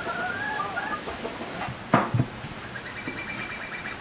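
Chickens clucking and calling, with two sharp knocks about halfway through and a quick run of repeated high notes near the end.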